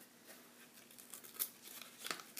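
A sheet of paper being torn by hand into small pieces: faint rustling with one short rip about one and a half seconds in.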